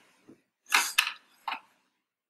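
Handling noise of small e-cigarette parts, a steel atomizer tank and a box battery, being moved and set down on a table: a few short knocks and clinks, the main one about a second in and another about half a second later.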